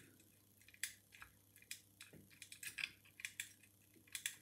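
Faint, irregular ticks and clicks of a bent coat-hanger-wire pick working the levers inside a Legge five-lever curtained mortice lock under tension, each click short and sharp.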